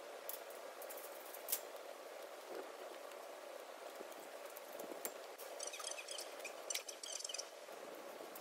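Faint light clicks of wire on a steel-mesh animal fence being fastened by hand, with a quick run of scratchy high ticks about two thirds of the way in.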